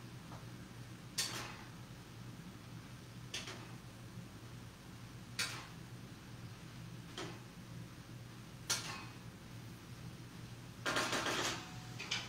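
Spatula knocking against a pan while cabbage and kale are stirred: a sharp knock about every two seconds, then a quick run of knocks near the end, over a steady low hum.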